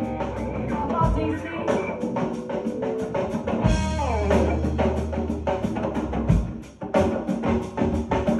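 Hardcore band playing live: a hard-hit drum kit, distorted electric guitar and a djembe hand drum. There is a falling glide in pitch about four seconds in, and the band drops out briefly just before seven seconds, then crashes back in.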